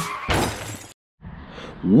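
A single crashing burst, like shattering glass, closes the intro music and dies away within about half a second. It is followed by a moment of dead silence, then faint background noise and a man's voice starting near the end.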